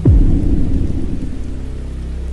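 A deep boom, dropping sharply in pitch and then rumbling away over about a second and a half, over a low, steady music drone.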